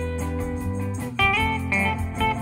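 Instrumental surf-rock band playing live: a lead electric guitar holds a long note, then starts a new phrase with a bend about a second in, over electric bass and drums with steady cymbal ticks.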